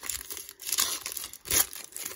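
Foil wrapper of a trading-card pack being torn open and crinkled by hand, crackling in bursts, with the loudest rip about one and a half seconds in.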